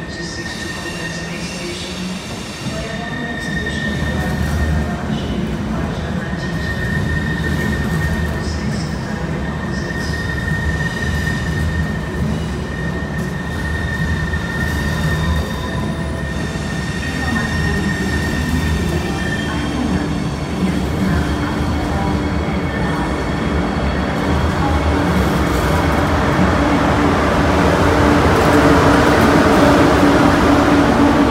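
DB ICE high-speed trains rolling slowly through the station, with a steady high wheel squeal through much of the first half. A lower hum and rumble grow louder near the end as a power car passes close by.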